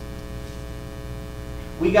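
Steady electrical mains hum, a stack of even unchanging tones, with a man's voice starting near the end.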